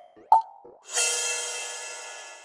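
Experimental electronic music: a short pitched blip about a third of a second in, then about a second in a bright, cymbal-like crash that a GRM Freeze plug-in holds as a sustained shimmering chord, slowly fading.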